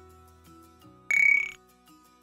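Soft background music, with a short, loud electronic chime about a second in, lasting about half a second: one bright high tone over a rising sweep, an outro logo sound effect.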